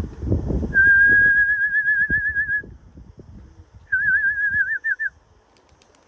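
A person whistling twice. The first is a long, high whistle with a slight waver, and the second, shorter one warbles strongly. There is a low rumble on the microphone at the start.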